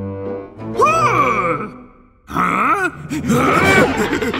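Wordless cartoon-character vocalizing: a low, buzzy groan at the start, then several gliding, rise-and-fall sing-song calls, over background music.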